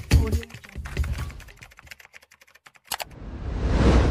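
Computer-keyboard typing sound effect: a quick run of key clicks that grows fainter and stops. Near the end a rush of noise swells up.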